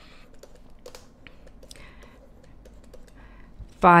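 Faint, irregular taps and short scratches of a stylus writing on a tablet as handwritten figures go down.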